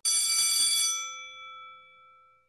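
A single bright bell-like chime struck once, ringing out and fading away over about three seconds: the closing sting that starts with the end-card graphic.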